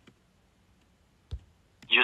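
Two light clicks in a quiet room, a faint one at the start and a sharper one about a second and a half in, from handling a phone while a call is being placed. Phone-line audio starts right at the end.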